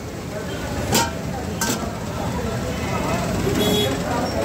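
Busy street-kitchen ambience: a steady, noisy roar with two sharp knocks, about one second in and again half a second later.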